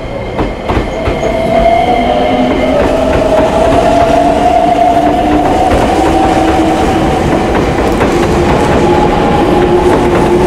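Nagoya Municipal Subway N3000-series train pulling out of the platform. A few wheel clicks over rail joints come first, then the traction motors' whine rises slowly in pitch as the train gathers speed, growing louder over the first couple of seconds and then holding over the running rumble.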